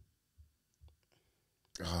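Three faint clicks from a laptop being worked, spaced through the first second, against near silence; a loud voice comes in near the end.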